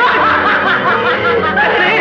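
A man laughing loudly and wildly, his voice swooping up and down in pitch, over film background music.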